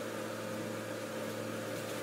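Steady machine hum with an even hiss and a constant mid-pitched tone, unchanging throughout.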